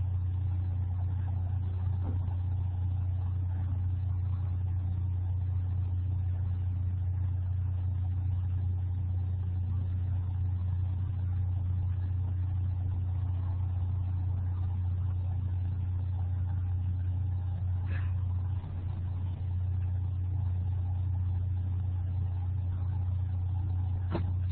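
A steady low hum, with a faint click about eighteen seconds in.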